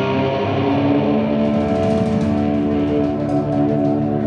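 Live band music: an electric guitar and the band holding a sustained chord that rings on with echo, over a steady low note.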